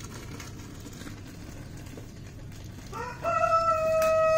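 A rooster crows, starting about three seconds in with a short rise into one long held call.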